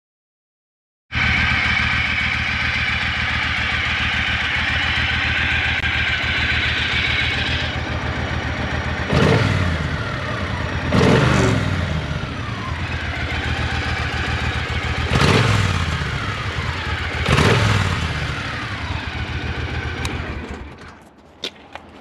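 Triumph Thunderbird 1600's parallel-twin engine idling, blipped four times on the throttle, each rev rising sharply and falling back to idle, and stopping near the end.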